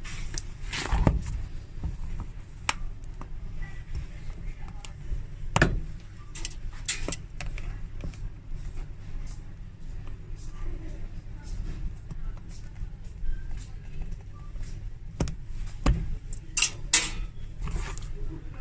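Steel pincers gripping and twisting worn heel-tip pins out of stiletto heels, with scattered clicks and knocks of tool and shoe being handled. A steady low hum runs underneath.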